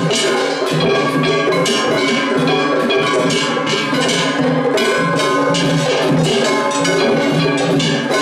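Matsuri festival-float ohayashi playing without a break: several large hand-held brass gongs (kane) clanging fast and continuously over beating taiko drums.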